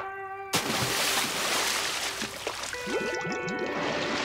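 Cartoon splash sound effect of a body diving into a tank of water: a sudden loud splash about half a second in, then water sloshing and bubbling for a couple of seconds. Music with held notes and a few short sliding tones comes in near the end.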